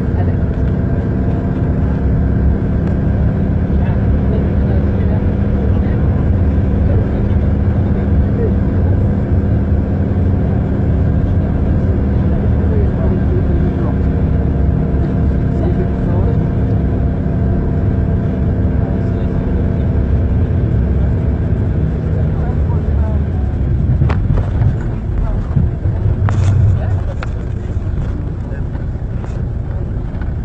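A vehicle's engine running at a steady note over low road rumble while driving. About 22 seconds in, the engine note drops away, and a few sharp knocks follow a few seconds later.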